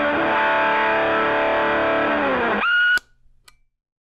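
Electric guitar played through an overdriven amplifier, a sustained chord ringing out. A little before three seconds in the low notes drop away and a high, steady note sounds briefly, then everything cuts off suddenly, leaving a couple of faint clicks.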